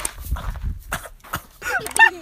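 Horse with its muzzle in a car window, breathing and making wet licking and mouthing noises against the door, a run of irregular soft clicks.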